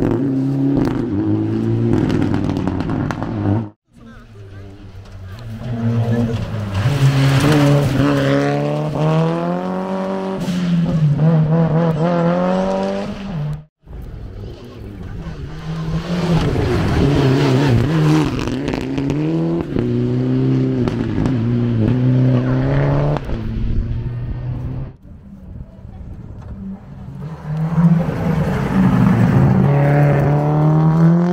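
Several rally cars driven hard on a gravel stage, among them a Mitsubishi Lancer Evolution and a Subaru Impreza with turbocharged four-cylinder engines: each engine revs high, drops and climbs again through gear changes as the car slides past. The sound breaks off sharply twice, about 4 and 14 seconds in.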